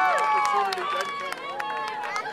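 A group of young girls clapping and cheering. Their high, held cheer trails off in the first second, and scattered, irregular hand claps go on after it.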